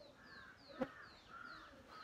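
Faint bird calls: a high falling chirp repeated about three times a second, with harsher, lower calls between, and a single sharp click a little under a second in.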